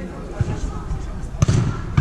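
A sharp thud of a football being struck about a second and a half in, with a fainter knock before it, over players' shouts.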